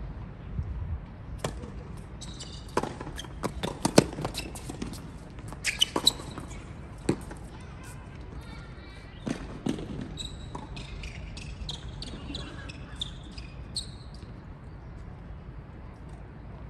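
Tennis balls struck by rackets and bouncing on a hard court during a rally: a string of sharp pops, loudest about four seconds in, thinning out after about ten seconds. Short high squeaks follow in the last few seconds.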